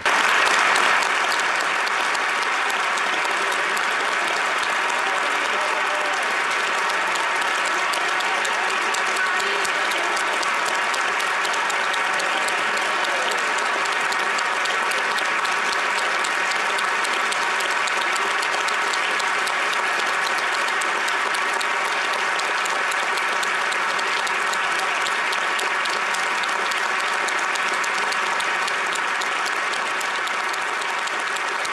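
A large crowd of parliamentarians and gallery spectators giving a standing ovation, many hands clapping together in a dense, steady applause. It sets in suddenly and holds at an even level.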